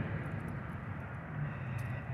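Steady low hum of vehicle traffic and running engines, even and unbroken, with no distinct events.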